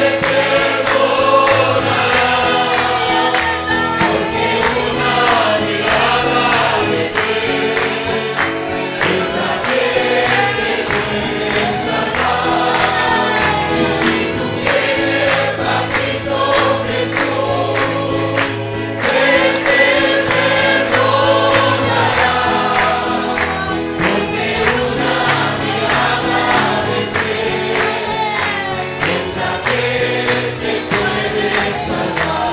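A congregation singing a worship song together, led by a live band with amplified singers and guitar, over a steady beat.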